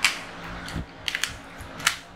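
Sharp clicks and snaps of tarot cards being handled just after shuffling: a loud click at the start, three quick clicks a little after a second in, and another sharp click near the end.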